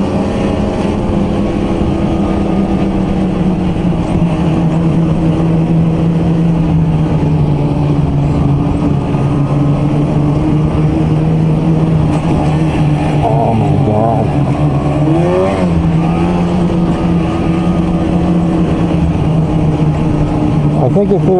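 Ski-Doo two-stroke E-TEC snowmobile engine running at a steady trail speed, heard from the rider's seat, its pitch dipping briefly and recovering about three-quarters of the way through.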